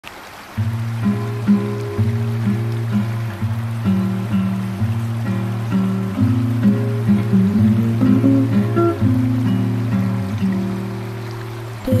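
Background music with a steady low bass line and a gently changing melody, starting about half a second in.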